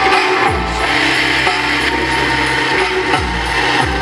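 Electronic downtempo music played over a sound system, with deep kick-drum hits and a gritty, noisy swell in the middle.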